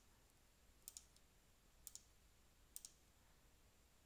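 Three faint computer mouse clicks about a second apart, each a quick press-and-release pair, as keys are pressed on an on-screen calculator emulator.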